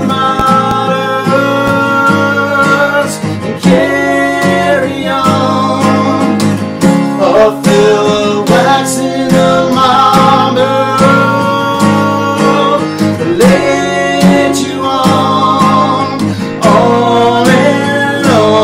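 Acoustic guitar strummed steadily under two men's voices singing together.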